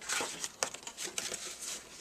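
A paper plate being creased by hand and then unfolded, its paper crinkling and rustling in a run of small crackles.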